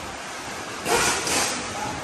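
Steady workshop background noise, with a short, loud burst of hiss-like noise about a second in that lasts about half a second.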